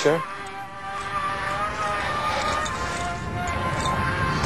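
Background music of slow, held notes that shift in pitch now and then, a quiet suspense bed.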